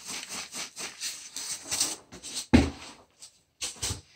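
Bagged cow manure poured from its plastic bag into a tray of potting soil: the bag rustling and the manure falling onto the soil, with one dull thump about two and a half seconds in.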